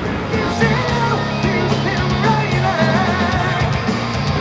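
Heavy rock band playing, with a singing voice over guitar and drums and long held low bass notes.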